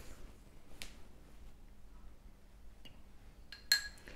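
Spoon clinking against crockery as apple sauce is served: a mostly quiet stretch with a few faint clicks, then one sharp, briefly ringing clink near the end.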